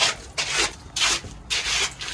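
Gritty scraping or rubbing noises in several short strokes, about half a second apart.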